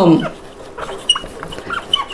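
Whiteboard marker squeaking and scratching across a whiteboard in a few short strokes as a word is written.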